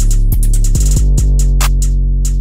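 Trap drum beat playing back from FL Studio: a loud, sustained deep 808 bass with punchy kick hits under fast hi-hats, which break into a quick roll just before a second in.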